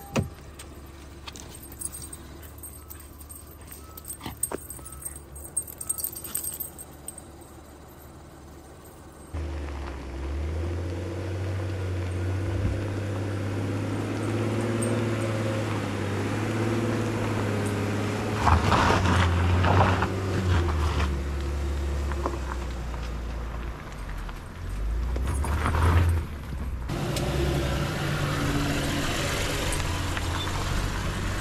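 Small metallic jingles and clicks of dog tags as the dogs move about the truck cab for the first nine seconds or so. Then a lifted Honda Ridgeline's 3.5-litre V6 and tyres, driving along a gravel trail, starts abruptly and runs loud and steady, swelling louder twice in the second half.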